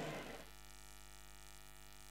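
Low, steady electrical mains hum with a ladder of faint evenly spaced overtones, heard once the echo of a man's voice dies away in the first half second.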